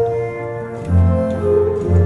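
The 1872 Holdich pipe organ played on two manuals: sustained chords with a melody moving above them, and a strong low bass note that comes in about a second in.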